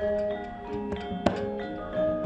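Javanese gamelan playing softly, struck metallophone notes ringing and overlapping, with two sharp knocks about a second in.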